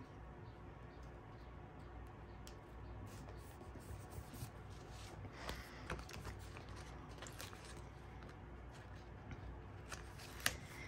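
Faint handling sounds of planner stickers: scattered light clicks of metal tweezers and rustling of paper sticker sheets over a low room hum.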